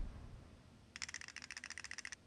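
A quick rattle of sharp clicks, about fifteen a second, starting about halfway in and lasting about a second.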